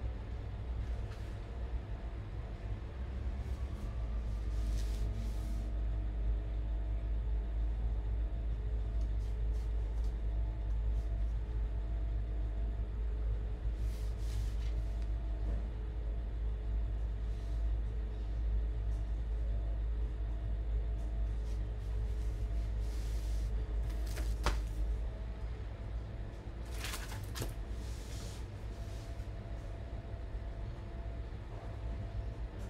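Steady low rumble with a faint hum, broken a few times by short scratchy sounds, likely a carving knife cutting into the wooden block.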